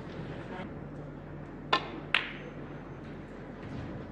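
A snooker shot: the sharp click of the cue tip striking the cue ball, then a second click about half a second later as the cue ball strikes a red. Under it is the low steady hum of a quiet arena.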